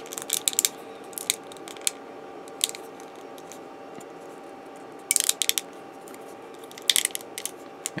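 Small plastic model-kit parts being handled and pressed together by hand, giving irregular clusters of sharp little clicks. A faint steady hum runs underneath.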